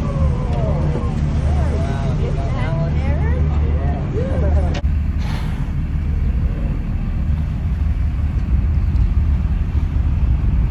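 Excited human voices calling out in rising and falling exclamations over a steady low rumble on the boat. About five seconds in, the voices stop at an abrupt cut, and only the low rumble goes on.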